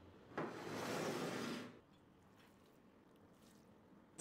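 A brief wet sound, lasting just over a second, of cooked zucchini and green lentils in their juice being moved out of the pan. It starts about half a second in.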